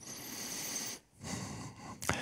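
A man's breaths close on a microphone, two in a row: a longer one of about a second, then a shorter one.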